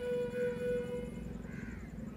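A crow cawing twice, faintly, over a held background music note that fades out about a second in.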